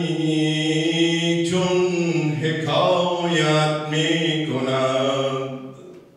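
A man's voice chanting a line of poetry in long, held, slightly wavering notes, a sung recitation rather than speech. The last note dies away just before the end.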